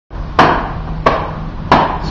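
Three sharp, evenly spaced leather smacks on a baseball glove, each ringing briefly in the room.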